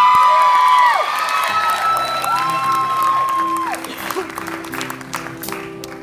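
Audience applauding and cheering, with two long shrill whistles, one right at the start and another about two seconds in. A band starts holding steady notes underneath from about two and a half seconds in.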